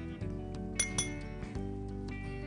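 A metal spoon clinks twice, sharp and ringing, about a quarter second apart, as butter cubes are spooned from a small porcelain dish into a frying pan. Steady background music plays under it.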